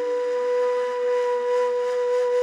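Outro music: a flute-like wind instrument holding one long, steady note.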